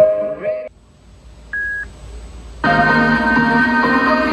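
Music played through an electric unicycle's built-in speaker (the Tesla V2's) cuts off under a second in. A single short beep follows, and at about two and a half seconds music starts again from the T3's built-in speaker.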